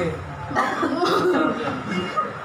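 Coughing among voices and light chuckling.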